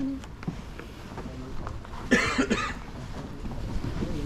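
A person coughs once, a short loud cough about two seconds in, with faint footsteps and light knocks from people walking along the track.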